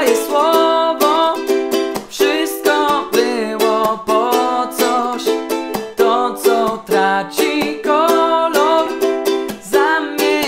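Ukulele strummed in a steady rhythm through changing chords, with a man singing the chorus melody in Polish over it.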